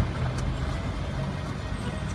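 Steady low background rumble with a faint hum, and no distinct events.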